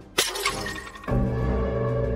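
A sudden shattering crash, a cartoon breaking sound effect, that rings off over most of a second. About a second in, dramatic music comes in with sustained low notes.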